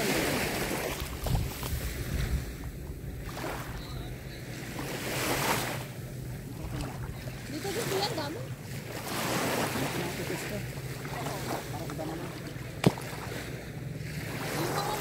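Small waves washing in over a sandy shore, the hiss of the surf swelling and falling back every two to three seconds. A single sharp click sounds near the end.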